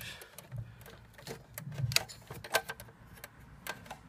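Irregular small clicks and taps of wires and connectors being worked loose by hand from an RV power converter's terminals, about eight sharp clicks in four seconds.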